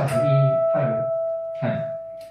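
A single held reference note on E, about 660 Hz, sounding steadily for about two seconds and fading away near the end, with a few short spoken sounds over it.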